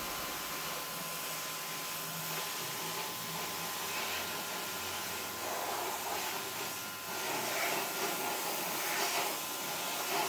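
Pressure washer running, its water jet spraying with a steady hiss against the car's bodywork; the spray gets louder in the second half.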